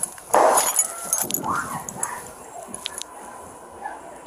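A dog barking: one loud bark shortly after the start, then a few quieter barks.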